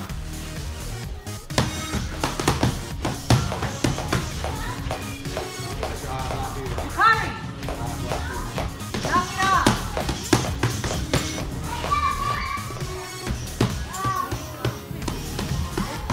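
Boxing gloves smacking into focus mitts in quick, irregular strings of sharp hits, over steady background music and children's voices calling out in a large hall.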